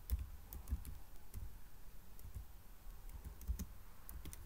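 Typing on a computer keyboard: a run of irregularly spaced key clicks as a few words are typed.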